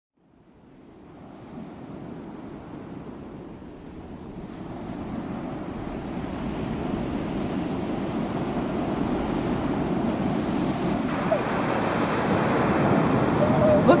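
Ocean surf washing on a beach, with wind on the microphone, fading in from silence over the first few seconds and growing steadily louder.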